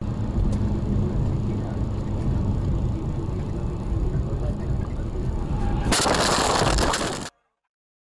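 Tyre and road noise inside a car driving on a wet highway: a steady low rumble. About six seconds in, a loud hiss takes over for about a second, then the sound cuts off abruptly.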